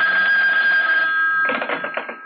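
Telephone bell ringing, a steady ring that starts just as the music cuts off and dies away near the end as the call is answered.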